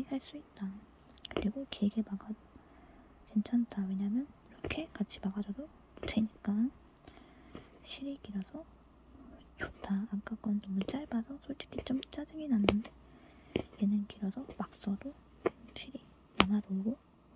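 A punch needle stabbing through embroidery cloth stretched in a hoop, making irregular soft clicks, under a quiet whispering voice.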